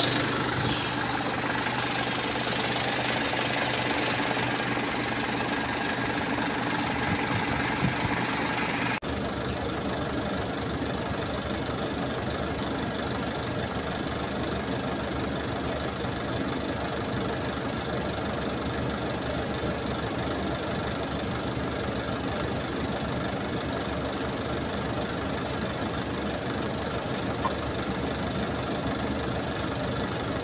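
Hyundai Coaster minibus engine idling steadily, with a brief dropout about nine seconds in.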